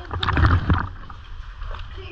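Water splashing and sloshing close to the microphone as swimmers move through a deep canyon pool, loudest and most broken in the first second, then settling to a steadier wash of moving water.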